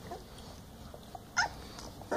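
An 18-day-old puppy gives one short, high-pitched squeak about a second and a half in. A fainter little squeak comes just after the start.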